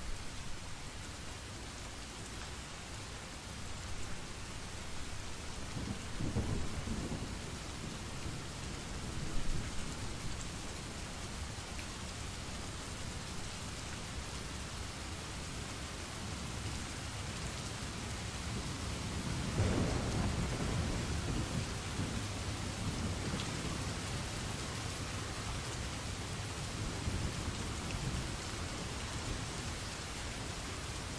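Steady rain. Two low rolls of thunder come through it, a short one about six seconds in and a longer one about twenty seconds in.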